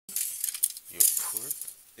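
Clinks and rattles of a metal light-panel mounting bracket being handled and taken off the panel, in two bursts, with a short spoken word about midway.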